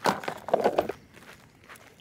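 A sharp knock as picked crookneck squash go into a plastic tub, then a short cluster of crunching footsteps on dry, clumpy soil about half a second in.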